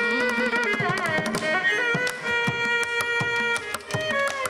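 Carnatic music: a held, ornamented melodic line with sliding pitch, accompanied by frequent mridangam and ghatam strokes.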